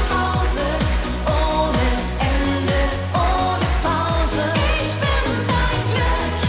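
Upbeat German schlager pop song: a woman singing over a band with a steady kick-drum beat and bass.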